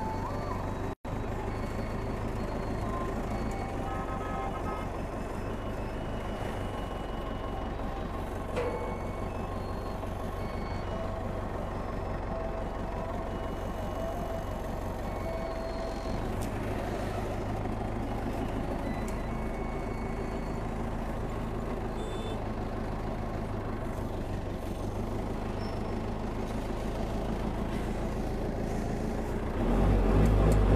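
Engine of an old forklift running steadily as it is driven, a continuous low drone.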